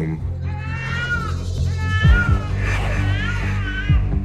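An infant crying, a run of rising-and-falling cries, over low, steady background music.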